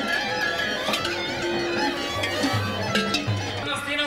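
Live music played on a plucked string instrument, with voices in the background.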